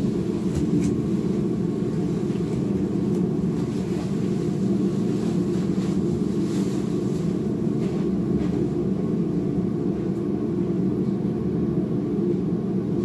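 A steady low rumble starts suddenly out of silence and holds at an even level, with a few faint clicks above it.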